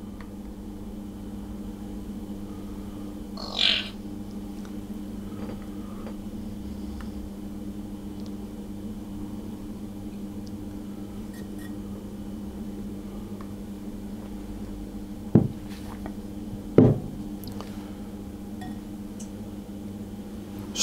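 A metal spoon working thick melted chocolate out of a glass bowl into a silicone mould, over a steady low hum. There is one short scrape about three and a half seconds in and two sharp knocks a second and a half apart near the end.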